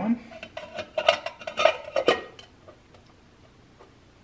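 Thin metal hub cover plate clinking and tapping against the hub of a Norton Commando rear wheel as it is set in place and turned by hand: a handful of light metallic clinks, the last about two seconds in.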